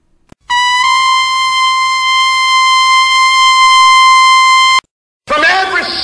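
One long, steady, high brass-like note, stepping up slightly in pitch just after it starts, held for about four seconds and cut off abruptly; a voice follows near the end.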